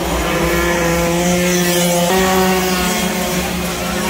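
Engines of 48cc racing motorcycles running hard down the track. The pitch climbs and then drops suddenly about two seconds in before climbing again.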